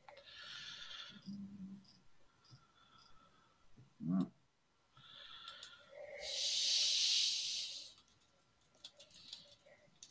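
Several bursts of breathy hissing noise picked up by a video-call microphone, the loudest lasting about two seconds past the middle, with a brief voiced sound about four seconds in and a few faint clicks.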